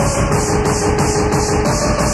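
Old-school acid and hardcore techno from a 1994 DJ mix tape: a dense, loud electronic dance track with a hissing high pulse about four times a second over held synth notes and a heavy bass.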